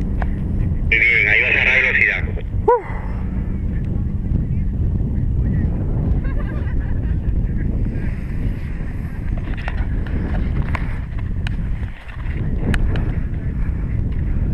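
Wind buffeting the microphone: a steady low rumble throughout, with a short brighter burst about a second in and a brief rising-and-falling chirp shortly after.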